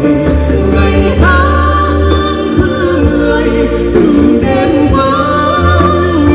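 A man and a woman singing a Vietnamese trữ tình (lyrical folk) song together through stage microphones.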